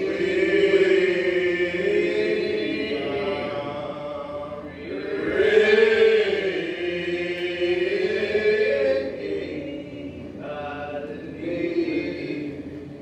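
Slow unaccompanied singing. Long, drawn-out vocal notes slide up and down in phrases that swell and fade, with short breaks about five and ten seconds in.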